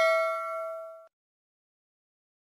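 Notification-bell ding sound effect from a subscribe-button animation: several ringing tones fading away, then cut off suddenly about a second in.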